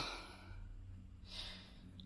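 A person's faint breath in, about a second and a half in, during a pause in talk, over a low steady background rumble.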